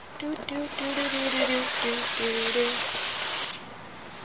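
Loud handling noise and rustling as a video camera is picked up and carried to a new spot, with a series of short low tones underneath. The rustling cuts off suddenly about three and a half seconds in.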